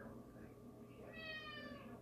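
A cat meowing once, about a second in: a single drawn-out call lasting almost a second, falling slightly in pitch.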